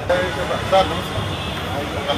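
A few words of men's voices over a steady low hum of street traffic.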